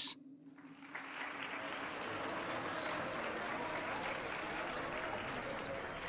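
An audience applauding, the steady clapping starting about a second in.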